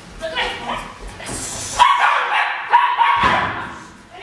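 Small dog barking and yipping in excited high-pitched bursts while running an agility course, the loudest in the second half.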